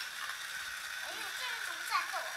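Speech only: a short spoken phrase in the second half, over steady faint background noise.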